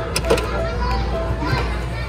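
Young children's voices and play chatter with background music, and a few sharp knocks near the start.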